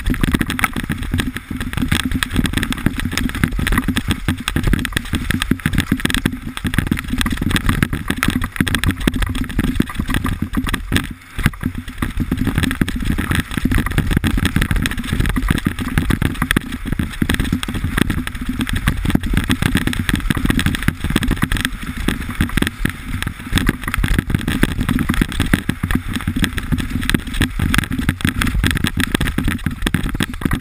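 Mountain bike descending fast on a dirt trail: wind rushing over the onboard camera's microphone and tyres rumbling on the ground, with constant jolts and rattles as the bike goes over rough ground. The noise drops briefly about eleven seconds in.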